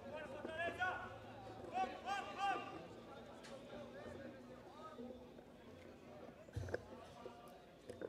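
Faint, distant voices calling and talking, with a single low thump about six and a half seconds in.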